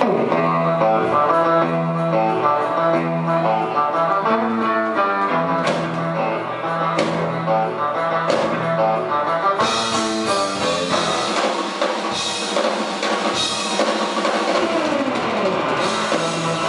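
Live surf-rock instrumental: electric guitar picking quick melodic runs over a drum kit. The guitar slides down in pitch right at the start and again near the end, and the drums and cymbals come in fuller about ten seconds in.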